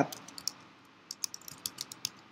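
Typing on a computer keyboard: about ten quick, irregular keystrokes, most of them in the second half.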